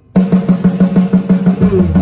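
Live band's drum kit breaking in suddenly with a fast, even roll, about ten strokes a second, over a steady low note. Near the end bass and guitar come in as the full band resumes the blues song.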